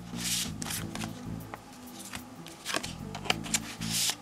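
Yu-Gi-Oh trading cards being handled and slid into plastic card sleeves: a run of short papery rustles, slides and small clicks. Quiet background music plays underneath.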